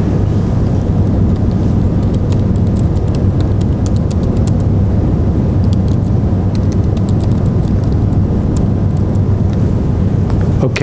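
Steady, loud low rumble with a few faint clicks scattered through it.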